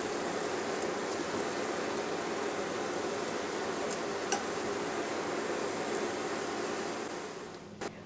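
Ripe plantain slices sizzling steadily in melted margarine in a stainless steel saucepan, with a faint pop about four seconds in. The sizzle fades away near the end.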